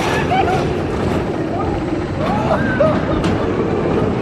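Indistinct voices talking in snatches over a steady low rumbling noise.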